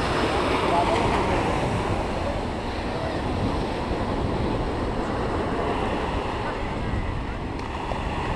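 Surf breaking on a beach, a steady wash of waves, with wind buffeting the microphone and a crowd's voices faintly in the background.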